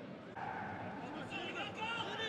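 Faint, distant shouts and calls of players on the pitch, carrying across a stadium with no crowd in the stands.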